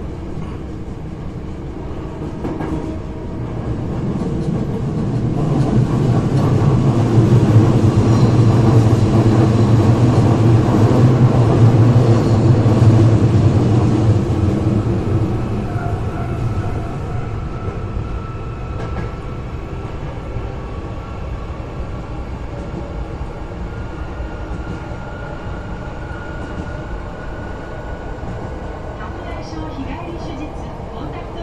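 Hankyu 8300 series commuter train running through the subway tunnel toward its terminus. The rumble swells to a peak a few seconds in, stays loud for several seconds, then eases off to steadier running with faint held whining tones.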